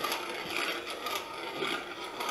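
Antique wooden box coffee mill being hand-cranked, its burrs making a steady scraping grind with fast small clicks.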